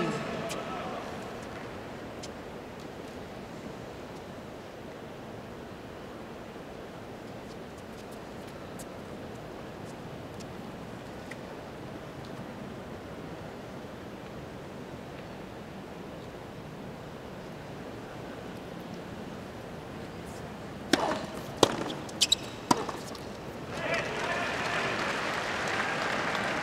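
Quiet stadium crowd ambience. Near the end comes a quick run of four sharp tennis ball strikes in about two seconds, and then the crowd applauds.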